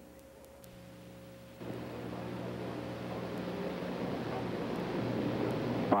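Steady electrical hum under faint recording hiss, the gap between two recorded broadcast segments; about one and a half seconds in, a broad hiss comes in and slowly grows louder until a man's voice starts at the very end.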